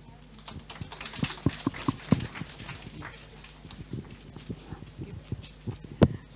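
Scattered applause from a small audience: a patter of individual hand claps, densest early on and thinning out toward the end.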